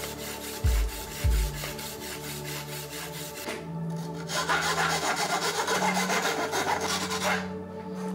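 A metal tool turned inside a bicycle frame's bottom bracket shell, scraping: a fast run of rasping strokes, then a harsher continuous rasp from about four and a half seconds in to about seven and a half. Background music plays underneath.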